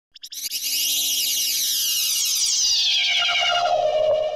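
Synthesized logo sting: a few quick clicks, then a dense, shimmering electronic sweep that falls steadily in pitch and settles on a lower, fuller tone near the end.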